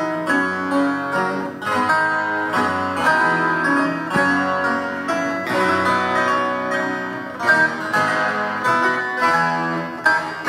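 Two-manual harpsichord being played: a continuous, busy passage of plucked notes.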